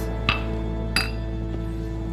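A drinking glass clinks twice, two short sharp chinks about 0.7 s apart, over soft sustained background music.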